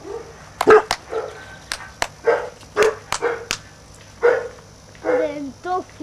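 German shorthaired pointer puppy barking in a string of short, separate barks, roughly one or two a second.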